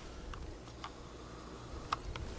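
Quiet room tone with three faint, light ticks spread across the two seconds, the small sounds of a hand handling pinned cloth on a wooden table while the camera zooms in.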